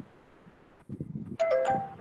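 A short two-note chime, a higher note stepping down to a lower one, about two-thirds of the way through, over faint low muffled background noise.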